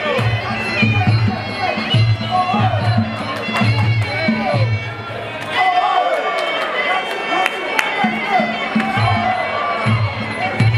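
Traditional Muay Thai fight music (sarama): a wavering, reedy oboe-like melody over a drum beat, with the drums dropping out for a moment about halfway through. Crowd voices run underneath.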